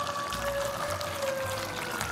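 Background music: a held note that sinks slowly in pitch, over a low pulse about twice a second. Faint crackle of beef gravy being stirred in a frying pan runs underneath.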